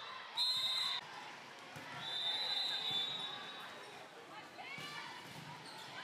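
Referee's whistle blown twice: a short, sharp blast about half a second in, then a longer blast from about two to three seconds in, over voices in a gymnasium.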